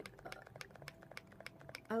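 Faint rapid clicking, several ticks a second, over a faint steady hum.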